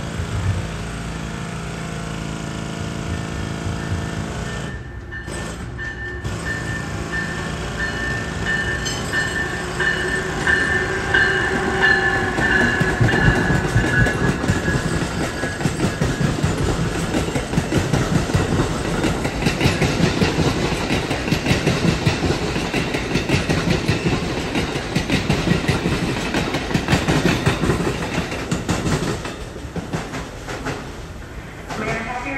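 Amtrak passenger train, an electric locomotive hauling Amfleet coaches, passing close by. A high whine sounds for a few seconds about a third of the way in. The rumble of wheels on rail then grows louder as the coaches roll past and stays loud to the end.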